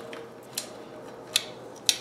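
Adjustable wrench clicking against the steel rear axle nut of a bicycle as it is fitted on to loosen the nut: three short, sharp metallic clicks, a little over half a second apart.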